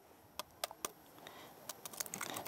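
Faint, sharp taps and clicks of eggs being handled and cracked against a mixing bowl: three about half a second in, then a few lighter ones near the end.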